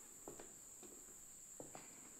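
Very faint footsteps on the wooden plank deck of a covered bridge, a few soft irregular steps, over a steady high insect drone.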